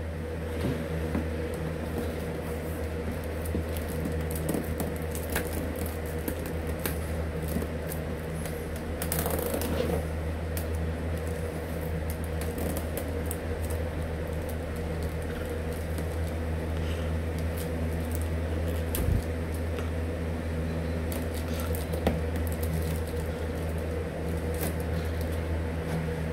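Hands handling a cardboard box, with scattered small clicks and rustles over a steady low room hum. A short, louder rustle comes about nine seconds in.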